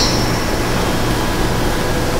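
Steady room background noise, a hiss across the whole range with a faint low hum, without speech.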